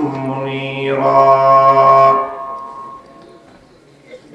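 A man's voice chanting Arabic in a melodic sermon-opening style through a microphone and loudspeakers, holding one long note that ends about two seconds in and dies away in the hall's echo.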